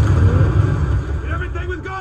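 Movie-trailer explosion effect: a loud boom with a heavy, deep rumble that slowly eases off. A man's voice from the trailer comes in over it about a second and a half in.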